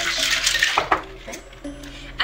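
Ice rattling inside a metal cocktail shaker, shaken hard for about the first second and then stopping, with soft background music.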